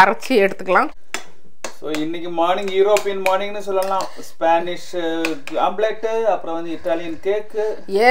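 A metal spoon clinking against a bowl in the first couple of seconds, as raw eggs are broken up and stirred into fried potato slices. Then a voice speaking through most of the rest.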